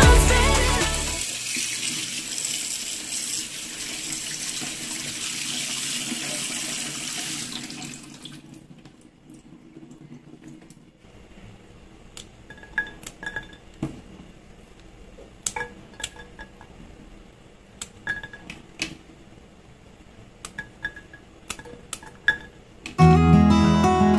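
Tap water running into a stainless-steel kitchen sink over green beans in a plastic colander, stopping about eight seconds in. Later, irregular sharp clicks with short light rings as a small knife cuts green beans and the pieces drop into a stainless-steel pot.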